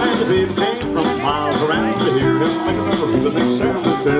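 Live country band playing an instrumental stretch of an up-tempo song, with a steady drum beat of about two hits a second.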